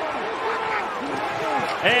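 Football TV broadcast audio in a lull between commentary lines: faint, low voices over a steady stadium background hiss. The play-by-play announcer starts speaking again at the very end.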